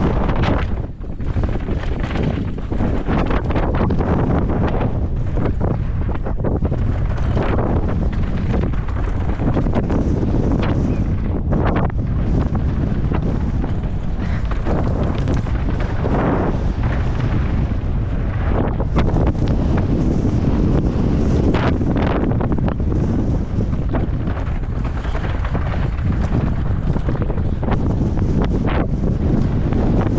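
Heavy wind buffeting the microphone of a camera on a mountain bike riding fast downhill, with frequent short knocks and rattles from the bike over rough, rocky trail.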